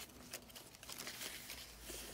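Faint rustling and a few light ticks of paper pages and journaling cards being handled in a chunky handmade junk journal.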